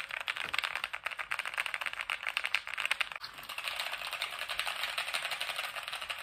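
Keys of a mechanical keyboard clattering rapidly in a continuous flurry of many clicks a second.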